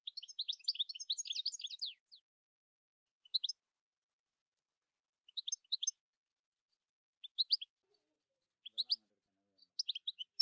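Small bird chirping: a fast string of high chirps for about two seconds, then short groups of two to four chirps every second or two.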